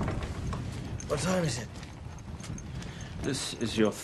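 A steady low rumble with scattered clattering and creaking, broken by two short voice-like calls, one about a second in and one near the end.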